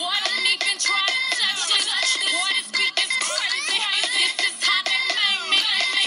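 Dance music with a sung melody whose pitch slides up and down over a steady beat. It sounds thin, with no bass, as from a phone or small speaker in the room.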